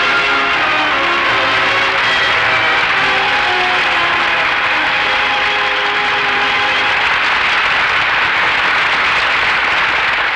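Studio audience applauding over the program's theme music; the music fades out under the applause about halfway through, and the applause goes on steadily until the host begins to speak.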